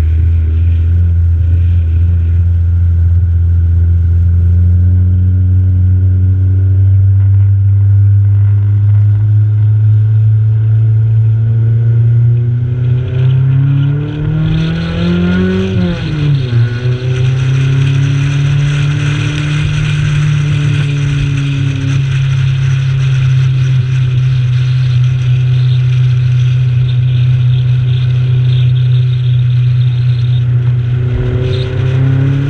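A Honda CRX race car's four-cylinder engine, heard from inside the cabin, pulls slowly up in pitch under light throttle. About halfway through it revs up quickly and drops sharply at a gear change, then runs on steadily in the next gear as wind and road noise rise.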